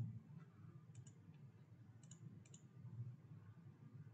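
Faint computer mouse clicks, three of them, about a second apart, over near silence.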